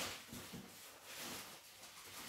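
Faint rustling and a few soft taps of tarot cards being handled as a card is drawn from the deck.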